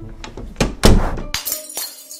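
Several heavy knocks and a loud crash of something breaking behind a closed door, loudest about a second in, followed by a few sharper clattering hits.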